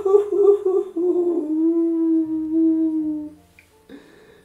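A man's drawn-out groan of dismay, wavering at first, then held on one steady note for about two seconds before stopping about three and a half seconds in.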